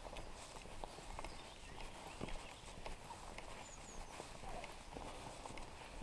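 Footsteps of a person walking on a paved lane, faint sharp steps roughly every half second, over a low steady rumble.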